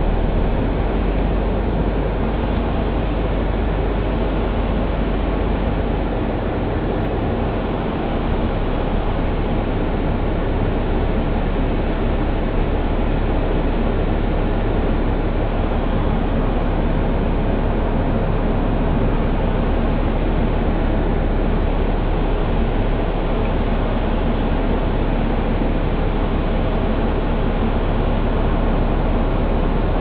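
Motor coach cabin noise while the coach is driving: a steady engine and road rumble with a low hum, heard from the driver's seat behind the windshield.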